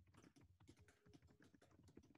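Faint typing on a computer keyboard: a steady run of key clicks as a sentence is typed.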